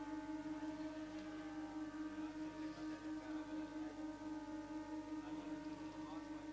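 Two conch shells (shankha) blown together in one long, steady note, with fainter wavering tones above it.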